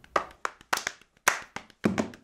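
A quick, uneven run of sharp, short percussive hits, roughly five a second, each with a brief ringing tail, like hand claps or knocks.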